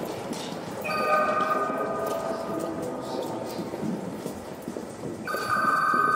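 A bell-like ringing tone sounds twice over a steady hiss: once for about a second near the start, and again near the end.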